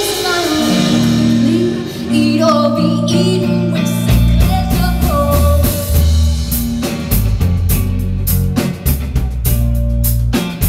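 Live indie rock band playing: a female lead vocal sung over electric guitar and bass. About four seconds in the bass grows heavier, and in the second half the drum kit drives a steady beat as the singing drops away.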